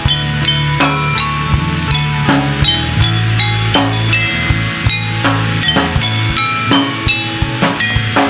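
A live band playing, with a drum kit keeping a steady beat under electric guitars and keyboard.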